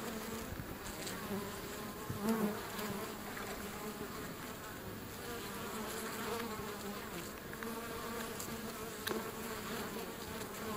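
A colony of European honey bees buzzing at the entrance of their wild hive in a tree hollow: a steady, many-winged hum that swells briefly about two seconds in.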